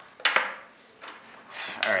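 A brief clatter of plastic parts and cables being handled, about a quarter second in, then quiet before a man starts speaking near the end.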